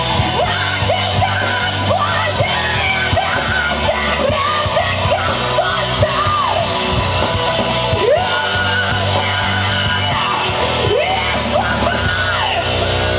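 Nu-metal band playing live, with a female lead vocalist singing into a microphone over loud guitars and drums; her voice slides up and down in pitch from phrase to phrase. Recorded from within the crowd in a club hall.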